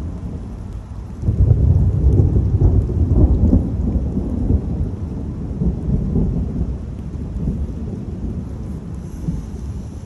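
Thunder rumbling: a low roll swells about a second in, is loudest for the next few seconds, then slowly dies away.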